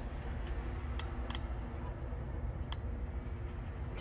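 A few light, sharp clicks over a steady low background hum.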